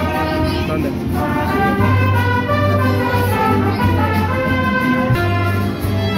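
Live mariachi band playing: trumpets and violins carry the melody over strummed guitars and a moving bass line.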